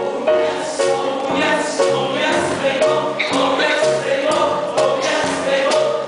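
Show tune from a live stage musical: voices singing together over a pit band, with a steady beat of about two pulses a second.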